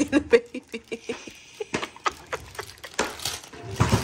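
Wrapping paper being torn and crinkled off a gift: a run of short, irregular rips and crackles.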